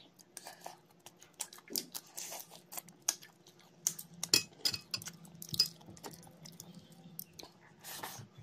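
Close-miked chewing of prawn curry and rice eaten by hand: irregular wet smacks and clicks of the mouth and teeth, with no rhythm.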